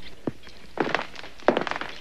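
Footsteps on a hard floor: a few separate thuds, roughly two-thirds of a second apart.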